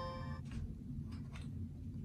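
Quiet background music, its held notes fading out about half a second in, with a few faint light taps.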